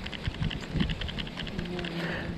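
Baitcasting reel being cranked to wind line back onto the spool, a fast, even run of light ticks.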